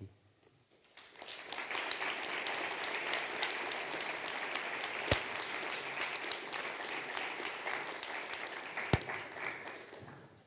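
Audience applauding, starting about a second in, holding steady, and dying away near the end. Two sharp clicks cut through it, the second one louder.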